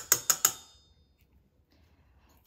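A spoon tapped against the rim of a bowl, about five quick, sharp taps within half a second, with a short metallic ring fading after them.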